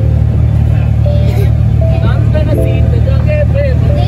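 A loud, steady low rumble with several people's voices over it.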